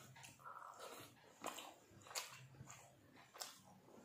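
Faint close-up eating sounds: chewing and fingers mixing rice and fish curry on a metal plate, with a few short wet clicks.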